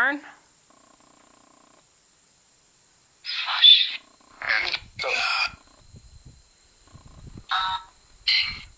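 Necrophonic spirit-box app on a phone, playing through the phone's speaker in answer to a question. About a second in there is a faint steady tone. Then come several short, harsh, garbled voice-like bursts around the middle and one more near the end.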